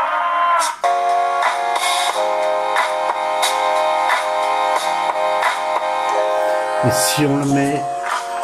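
Music played through the Takee 1 smartphone's own loudspeaker, loud and clear: sustained chords over a steady beat. A voice comes in near the end.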